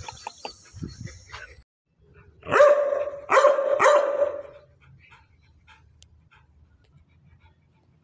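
A dog barking three times in quick succession, about two and a half seconds in.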